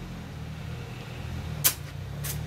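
A compression tester's release valve let out a short, sharp hiss of air about a second and a half in, bleeding off the cylinder pressure it had just read, over a steady low hum.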